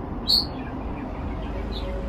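A bird chirps once, short and high, about a third of a second in, and more faintly near the end, over a low steady background hum.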